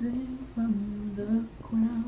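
A young man's voice singing unaccompanied, holding long wordless notes near one pitch, broken twice by short pauses.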